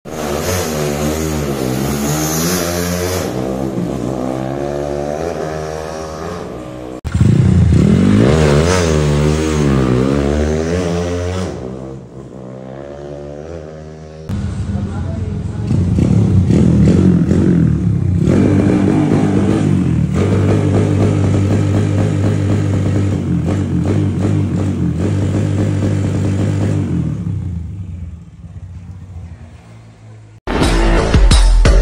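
Honda CB single-cylinder four-stroke motorcycle engine, bored and stroked to a 65 mm piston and 68 mm stroke with a roller camshaft, revved hard on a test ride. Its pitch climbs and drops over and over as the throttle is worked, with abrupt cuts between takes about a third and a half of the way through.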